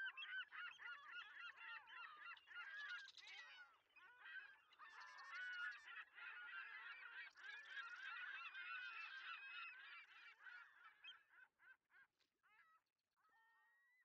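Faint chorus of many birds calling at once, dense overlapping calls that thin out and die away near the end.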